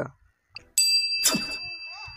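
A bright bell-like ding sound effect rings out about three-quarters of a second in and slowly fades, with a brief noisy sweep just after it sounds. It is the chime of an animated subscribe-and-notification-bell graphic.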